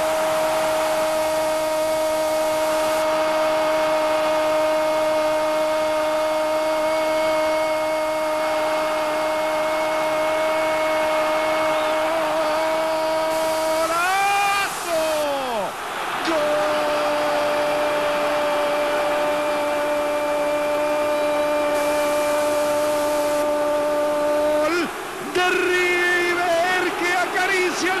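Football commentator's long drawn-out goal cry, one unbroken held 'gol' on a steady high note for about fourteen seconds. It swells, wavers and drops away, and after a short breath a second held cry runs about eight seconds more. Near the end it breaks into fast excited shouting, with stadium crowd noise beneath.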